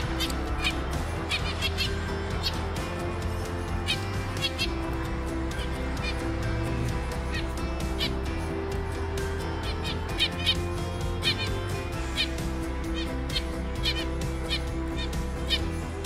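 Caged zebra finches calling: short, nasal peeps and beeps, scattered in quick runs through the first few seconds and again in the last third, over steady background music.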